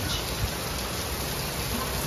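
Heavy downpour of rain: a steady, even hiss of rain pouring down.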